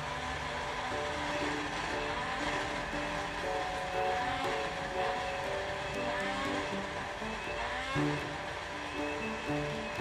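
Countertop blender motor running steadily while blending a drink, under background music with a melody of short notes.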